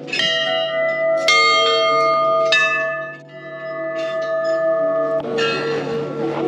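Large brass temple bells hanging over a shrine doorway, struck four times, about a second apart at first and then after a pause; each strike rings on in long, overlapping tones.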